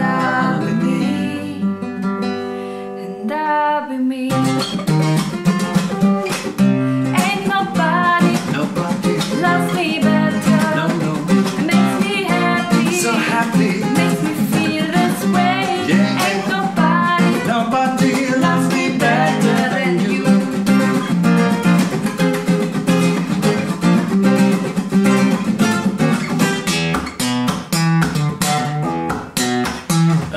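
Acoustic guitar with a woman singing over it. For the first few seconds the notes are held, then from about four seconds in the guitar strums a fast, percussive rhythm.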